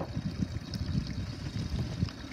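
Lake water lapping and trickling around the boats, over an irregular low rumble.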